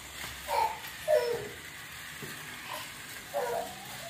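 Battery-powered toy cars running on a plastic racing track: a faint, steady whirring hiss with a few short, faint sounds mixed in.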